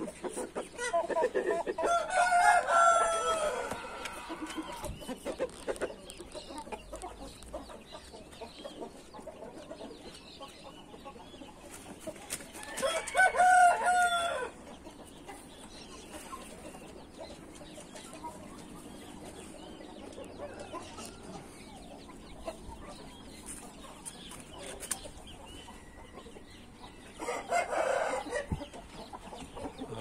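Índio roosters crowing: two crows of about two seconds each, one near the start and one about thirteen seconds in, then a shorter, short-ending crow near the end.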